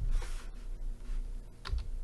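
Typing on a computer keyboard: a quick, uneven run of keystrokes as a command is entered.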